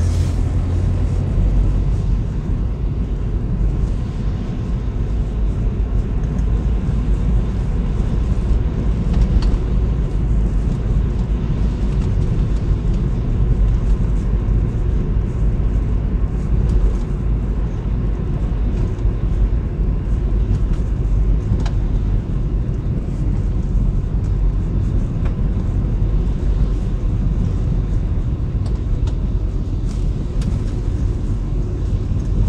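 A car driving, heard from inside the cabin: a steady low rumble of the engine and tyres on a wet road.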